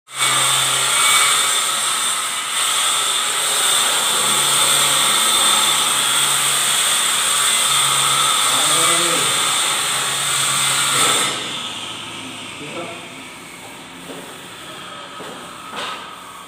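A power tool running with a steady high-pitched hiss and whine, cutting off abruptly about eleven seconds in; quieter voices follow.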